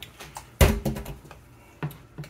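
Metal spoon clinking and scraping against a skillet while stirring thick gravy: a sharp clink about half a second in that rings briefly, lighter taps, and another knock near the end.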